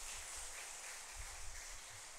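Quiet room noise from the hall's microphone: a steady faint hiss, with a few soft low bumps about a second in.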